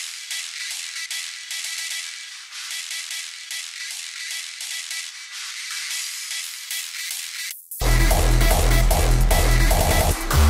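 Hardstyle track playing back with only its upper frequencies: everything below about 500 Hz is missing, as when the upper band of a multiband compressor is soloed. Near the end the full mix cuts back in, louder, with the heavy kick and sub bass.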